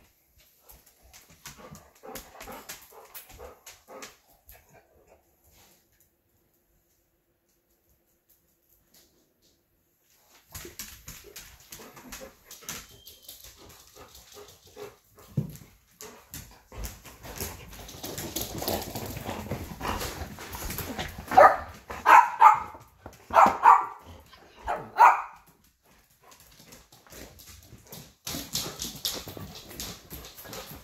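A dog barking: a run of about five loud barks in quick succession in the second half, over quieter shuffling and handling noise.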